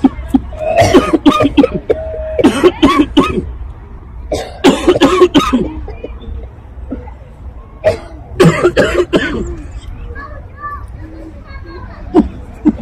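A person coughing hard in repeated fits, four bouts of several quick coughs each, about a second in, near three seconds, near five seconds and near eight and a half seconds.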